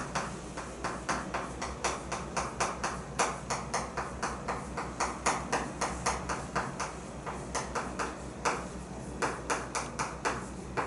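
Chalk writing on a chalkboard: a steady run of short taps and scrapes of the chalk stick on the board, several a second, as a line of text is written.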